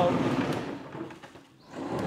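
Noisy running of a large 3D-printed tank as it drives across a concrete floor: brushless motors, chain-driven reduction boxes and grippy tracks. The noise fades away about a second and a half in and picks up again near the end.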